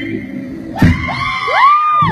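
The backing music drops out, a sharp hit lands about a second in, and then comes a high whooping "woo" that rises and falls in pitch.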